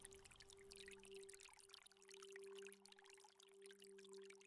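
Faint trickling, flowing water with a quiet, steady low drone held underneath.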